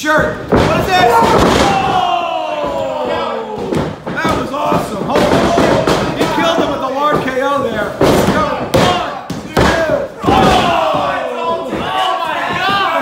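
Wrestlers' bodies hitting a wrestling ring's mat with several heavy thuds, amid shouting and yelling voices. There are two long falling yells, one starting about a second in and one near the end.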